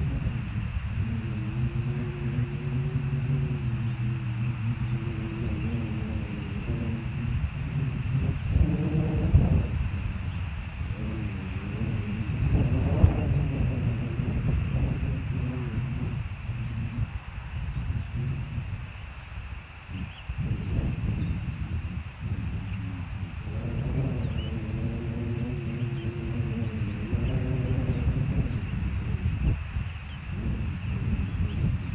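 Low wind rumble on the microphone, with a distant engine's low, wavering drone that swells and fades, loudest in the first few seconds and again near the end.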